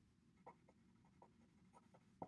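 Very faint scratching of a pen writing on paper: about six short strokes as the figures and letters are written out.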